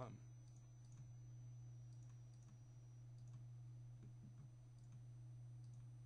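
Near silence: a few faint, scattered computer mouse clicks over a steady low hum.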